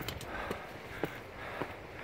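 Footsteps on bare rock, about two steps a second.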